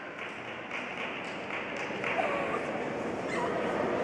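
Steady background noise of an ice rink with faint, brief distant voices.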